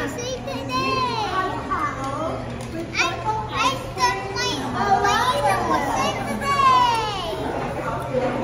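Children's excited, high-pitched voices, without clear words, with swooping squeals about a second in and again near the end, over a steady low hum.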